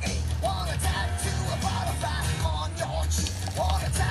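Background music with a steady bass line and a wavering melody over it.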